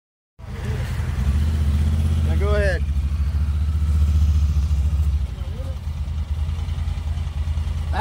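Side-by-side UTV engine running under throttle on a dirt trail, easing off about five seconds in. A short shout of a voice about two and a half seconds in.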